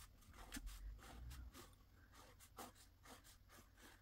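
Faint scratching of a pencil drawing lines on watercolour paper, in a series of short, irregular strokes.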